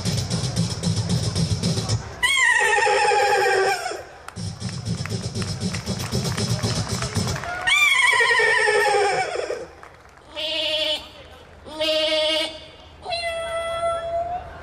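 A man performing a song by vocal mimicry into a microphone. Rasping, buzzing passages alternate with wailing falling glides, twice, and then come short warbling held notes and one steady held note near the end.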